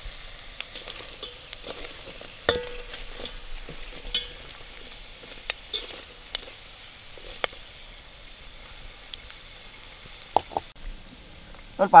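Pork rinds (chicharon) deep-frying in hot oil in a metal pot: a steady crackling sizzle, with scattered clicks and scrapes of a metal utensil stirring the pieces against the pot.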